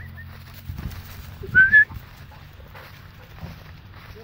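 A short, loud, rising whistle about a second and a half in, close to the microphone, over a steady low rumble.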